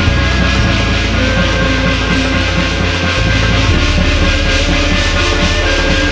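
Loud, driving Korean shamanic ritual (gut) music, steady and dense with percussion and sustained tones.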